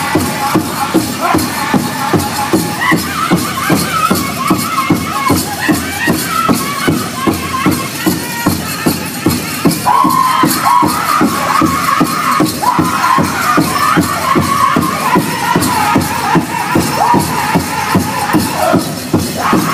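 A powwow drum group singing a men's traditional song: several men's voices singing high together over a steady, even beat on a large powwow drum. The singing swells louder about ten seconds in.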